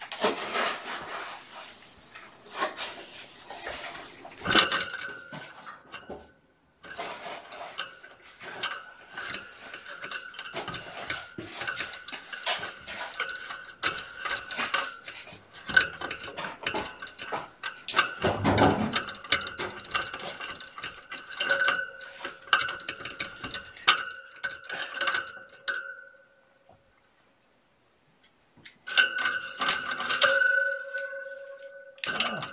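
Irregular clattering and clicking of hard objects, busy for most of the time with a louder burst a little past the middle, stopping about four seconds before the end.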